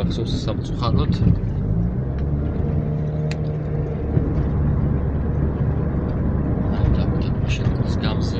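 Car driving, heard from inside the cabin: a steady low hum of engine and road noise.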